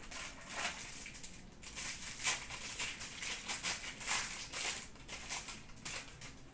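Foil trading-card pack wrapper crinkling as it is handled and opened: a run of short, irregular crackles.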